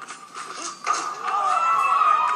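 Film soundtrack playing from a TV, recorded off the speaker: a few light knocks, then music with held tones swelling in about a second in.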